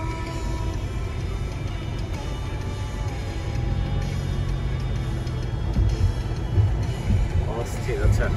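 Background music whose sustained tones fade away in the first few seconds, over steady low road noise from a moving car. A voice comes in near the end.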